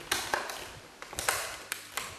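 Handling of a boxed action figure's packaging: about five sharp taps and clicks of plastic and cardboard, two in quick succession at the start and more in the second half.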